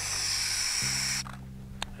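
Nestling burrowing owl, a little over four weeks old, giving its rattle or hiss call: one hiss lasting about a second and a half that cuts off abruptly about a second in. The call is thought to mimic a rattlesnake.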